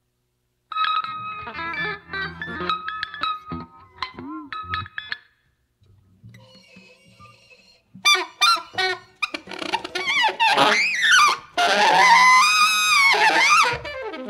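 Free-improvised avant-garde ensemble music from reeds, violins and guitars. After a moment's silence come scattered short pitched notes and plucks, then a quieter lull, then from about eight seconds in a loud passage of high, wavering pitches sliding up and down.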